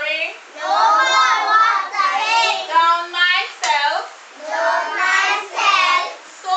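Young children singing a song, in three phrases with short breaks between them.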